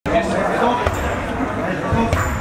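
Indistinct talk of several people in a large gym hall, with a few dull thuds in the first second.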